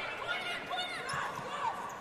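Indoor volleyball rally on a hardwood court: the ball being played and players' shoes on the floor, over arena crowd noise.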